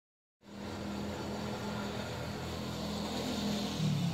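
A steady low engine hum with a constant pitch and no breaks, starting about half a second in and swelling slightly near the end.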